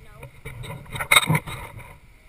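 Children's voices, with a short loud burst of noise just over a second in.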